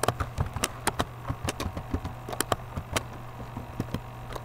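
Typing on a computer keyboard: a run of irregular clicking keystrokes, sparser near the end, over a steady low hum.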